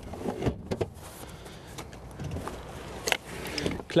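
A few light clicks and knocks with faint rustling from the rear seat and boot trim of a Renault Captur being handled, with two sharper clicks near the start and another about three seconds in.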